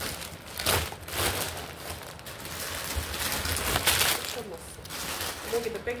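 Clear plastic bags crinkling and rustling as they are handled and lifted out of a cardboard box, in irregular bursts.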